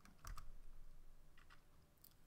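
A few faint computer keyboard key presses: two quick clicks just after the start and two more about a second and a half in.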